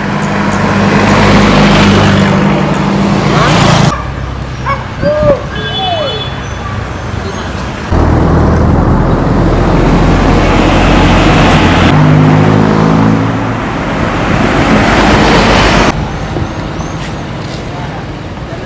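Road traffic close by: motorcycle and truck engines running and passing, with a steady engine drone and tyre noise, broken by abrupt cuts into a series of short clips. One quieter stretch holds a few short high-pitched squeaks.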